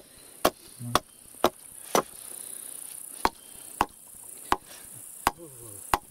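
Hatchet chopping the end of a wooden stake, sharp blows on wood: four about half a second apart, then after a short pause four more, more widely spaced.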